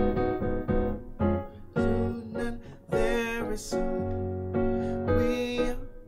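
Piano playing gospel chords, starting on an E-flat minor seven over D-flat: several chords struck one after another and left to ring, with a fuller, higher-reaching chord about three seconds in.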